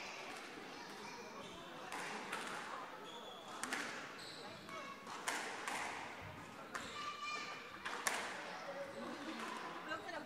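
Squash rally in a hall: the ball is struck by rackets and cracks off the court walls in sharp, irregular knocks about a second apart, with short squeaks of court shoes on the wooden floor.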